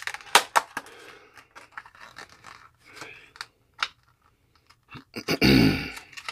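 Clear plastic blister pack crackling and clicking as it is pried open and the card insert is slid out. A person clears their throat loudly near the end.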